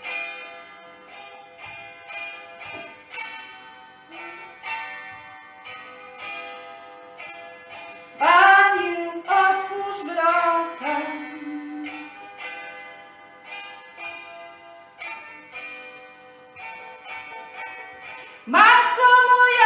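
Hammered dulcimer (cymbały) playing a ringing instrumental passage of a Polish folk ballad, many struck notes each fading out. About eight seconds in, a woman's voice sings a short, louder phrase lasting about three seconds over it.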